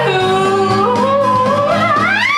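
A stage-musical vocal: one long sung note, stepping slightly upward, held over instrumental accompaniment with a steady low bass line.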